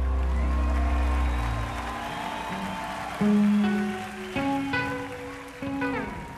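A live rock band's final chord dies away in the first two seconds. Then single held guitar notes ring out, a new one about every second, over a steady crowd cheering.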